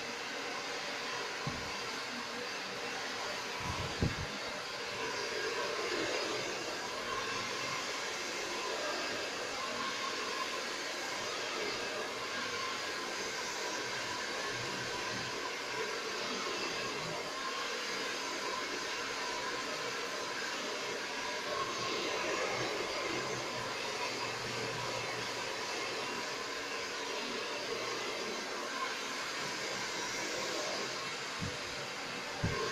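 Handheld hair dryer running steadily, with a faint steady whine from its motor. A single brief knock sounds about four seconds in.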